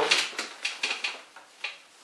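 A run of light knocks and rustles as a book is picked up from beside a chair, dying away, with one sharper click about a second and a half in.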